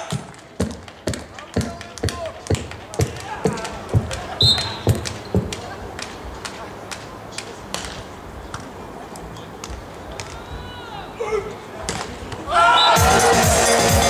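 Arena music cuts off, then a run of dull thumps comes about twice a second for some five seconds, with a short referee's whistle about four seconds in, signalling the serve. After a quieter stretch during play, loud music comes back near the end as the rally ends.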